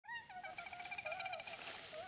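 Faint forest ambience of small animal calls: quick, repeated chirps and trills at several pitches.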